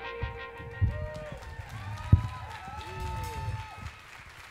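Indie-rock band playing live in a quiet, sparse passage: sustained notes that bend and glide over soft low drum thumps, with one sharp hit about two seconds in.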